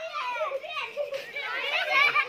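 A group of children talking and calling out over one another as they play.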